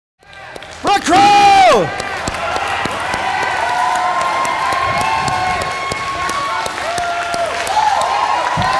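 Small audience clapping and cheering, with many voices whooping over the applause. About a second in, one loud shout falls in pitch.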